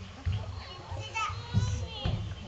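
Young children chattering among themselves in high voices, with low bumps and rustling of movement underneath.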